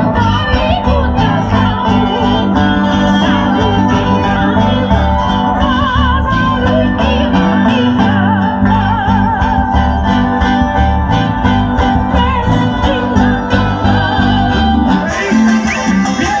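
Traditional Andean folk music from Acos: plucked strings over steady bass notes, with singing and a wavering high melody line. The music goes on without a break, and its sound changes abruptly about a second before the end.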